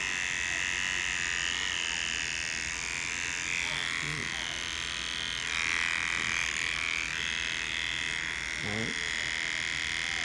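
Electric hair trimmer buzzing steadily as it edges a hairline, its tone wavering slightly.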